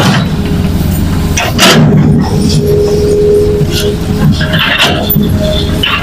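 Hitachi crawler excavator's diesel engine running under load as the bucket digs and scrapes through soil and rocks, with a few sharp crunches, one at the start, one just under two seconds in and one near the end.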